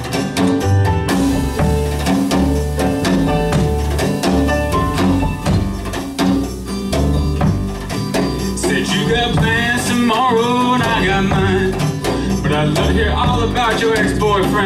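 Live acoustic band playing a song: acoustic guitar, double bass, piano and drums with a steady beat. A little past halfway a man's voice comes in singing over the band.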